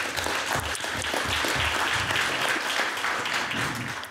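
Audience applauding, a dense patter of many hands clapping that dies down near the end.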